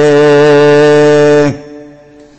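A man's voice holding one long, steady note while chanting a Quranic verse. It cuts off about one and a half seconds in, and an echo fades away after it.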